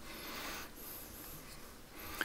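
Faint rustling and breathing picked up close by a headset microphone, over quiet room tone.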